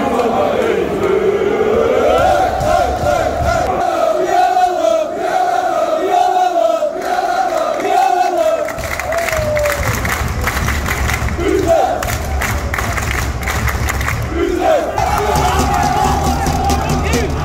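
Football supporters chanting together, a sung chant whose melody rises and falls. After about nine seconds the singing gives way to rougher crowd noise, and another chant starts near the end.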